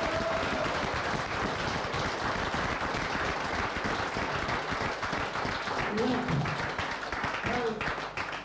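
Audience applauding: a dense, steady clatter of many hands clapping, with a few voices coming through about six seconds in and near the end.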